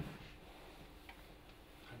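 Near silence: room tone with a faint steady hum and a single faint tick about a second in.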